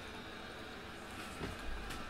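Faint room tone, then a few soft low gulps near the end as a man chugs a can of beer.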